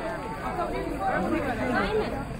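Several people talking at once: overlapping chatter, with no single voice standing out.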